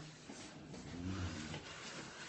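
Two short, low, muffled vocal sounds, the second a little longer.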